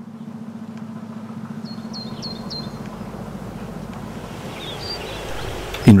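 Woodland ambience under a steady low drone with a fast pulse, like a distant motor, and a small bird chirping four times in quick succession about two seconds in and twice more near the end.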